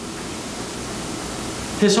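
A steady hiss of background noise, with a man's voice coming back near the end.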